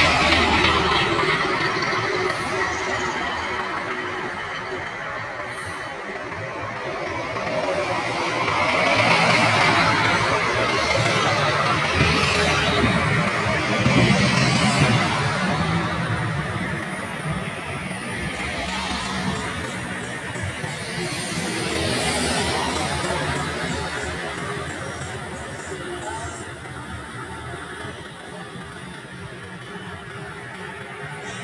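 Road traffic passing one vehicle after another, a bus and cars, the noise swelling and fading with each pass; the biggest swells come near the start, about a third of the way in and again about two-thirds in. Music plays underneath.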